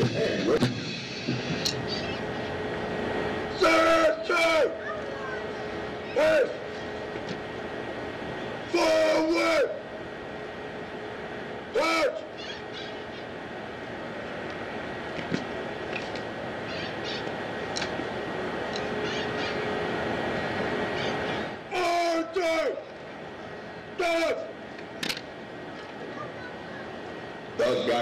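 Drill commands shouted as short, loud, drawn-out calls every few seconds, with a steady outdoor background noise between them.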